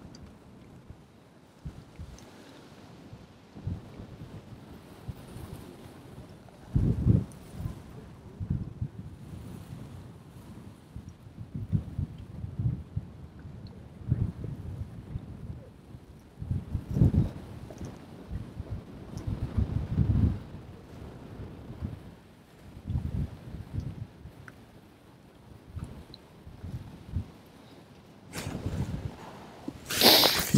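Wind buffeting the microphone in irregular gusts, heard as low rumbles that come and go, strongest about seven, seventeen and twenty seconds in.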